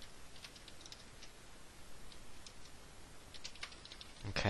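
Faint typing on a computer keyboard: key clicks in short, irregular runs.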